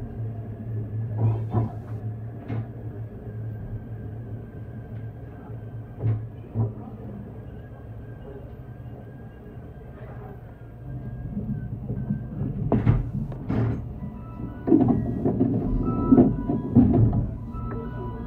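A short electronic melody of stepped tones starts about 14 seconds in, after two sharp knocks just before it. Under it runs a low steady hum with a thin high steady tone and occasional knocks.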